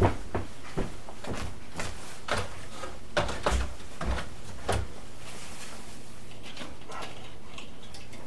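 A person walking up to a foam RC biplane on its wall mount and handling it: a few low thumps and scattered light knocks and clicks in the first five seconds, then only faint ticks.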